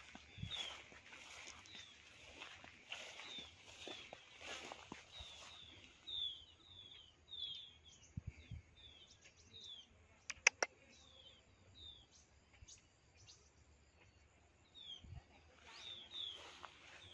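A flock of small birds giving short, high, downslurred chirps, one after another about every half-second, faint and scattered through the whole stretch.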